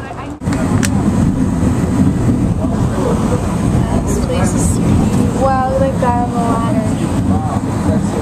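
Steady low rumble of a passenger vehicle in motion, heard from on board as it climbs, starting abruptly after a cut near the beginning. A voice is heard briefly about two-thirds of the way through.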